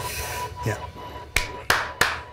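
Electronic dance music cuts off about half a second in. A brief voice follows, then three sharp, widely spaced hand claps.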